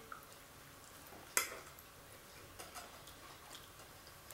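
A fork clinking once sharply against a plate about a second and a half in, with a few fainter small clicks of cutlery in a quiet room.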